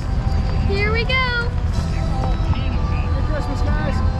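Low steady rumble of a car's cabin while it drives slowly, with music playing and a high excited voice calling out about a second in.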